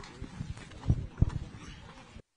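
Dull, irregular thumps and knocks, about five in two seconds, over a faint noisy background.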